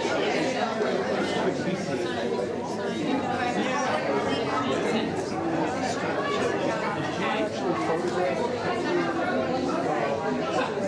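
Many people chatting at once in a large hall, a steady babble of overlapping voices with no single speaker standing out.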